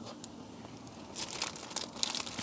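Thin plastic disposable gloves crinkling in short, irregular bursts as the hands handle a raw fish fillet, starting a little over a second in after a quiet first second.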